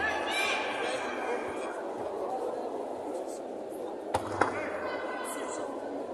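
Two sharp thumps a quarter-second apart about four seconds in: a judoka's body hitting the tatami mat in a throw attempt. Shouted voices and a steady hall crowd noise run underneath.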